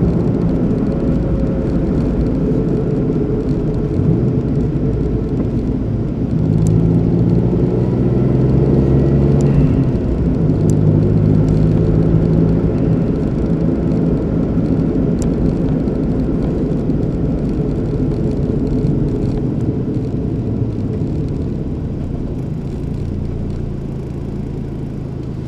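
Car engine and road noise heard from inside the cabin while driving. The engine note rises and falls with changes in speed and eases off a little near the end.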